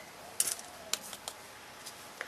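A few light plastic clicks and taps: a small plastic scoop knocking against a tub of clear glitter and being set down on the table. The loudest pair of clicks comes about half a second in, with scattered softer ticks after.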